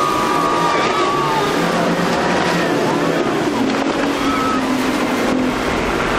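Twin Mercury 225 hp outboard motors running at speed, a steady drone that shifts in pitch partway through, over the rush of wake and spray.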